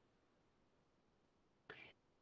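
Near silence, with a faint, brief intake of breath near the end.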